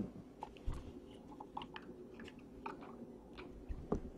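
Faint scattered ticks and rustles of cardboard and plastic trading-card packaging being handled, with a sharper click just before the end.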